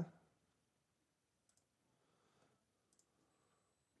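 Near silence with a few faint computer mouse clicks, one about a second and a half in and another near three seconds.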